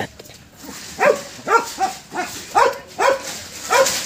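A dog barking: a run of about eight short barks, roughly two a second, starting about a second in.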